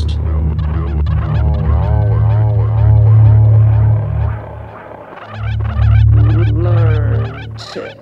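Experimental electronic music: a loud, sustained low bass drone under a warbling pitched sound that swoops up and down several times a second, twice. The bass drops out for a moment about five seconds in.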